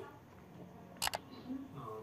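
A quick double mouse click about a second in: the sound effect of an on-screen like/subscribe animation pressing the like button.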